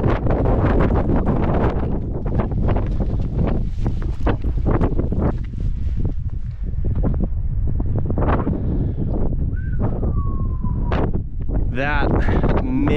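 Strong wind buffeting the camera microphone: a loud, steady low rumble with gusty crackling throughout. Near the end, a single whistle-like tone rises sharply and then slides slowly down in pitch over about a second.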